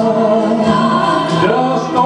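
Two men singing a gospel song together, their voices holding long, sustained notes.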